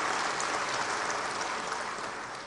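Chamber audience applauding, a steady patter of clapping that dies down toward the end.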